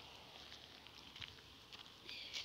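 Near silence with faint footsteps of someone walking in flip-flops on a gravel path: a few light scuffs and clicks about a second in and near the end.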